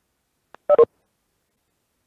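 A short two-note electronic blip, about a fifth of a second long, less than a second in, with dead silence around it.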